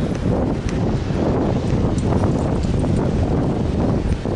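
Wind buffeting the camera's microphone: a steady, loud low rumble that rises and falls.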